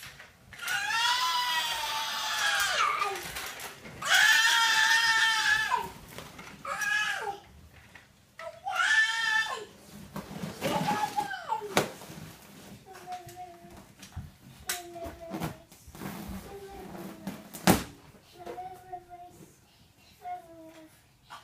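A young child shrieking in long, high-pitched squeals, four times in the first ten seconds, then shorter, quieter vocal sounds; a sharp knock near the end.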